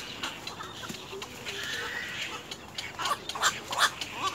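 Black-crowned night herons calling at the nest. A held call comes in the middle, then a quick run of loud, short calls near the end.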